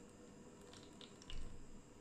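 Thick blended dragon fruit agar pudding mixture poured from a pan into a plastic tube mould, faint, with a few soft clicks and one brief louder low sound about a second and a half in.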